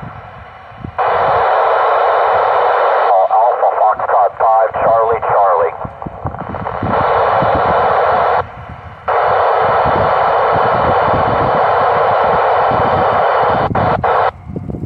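Amateur satellite FM downlink heard through an Icom ID-4100A mobile radio: loud bursts of static hiss that switch on and off abruptly as the squelch opens and closes on weak signals. A garbled, wavering voice comes through the noise about three to six seconds in.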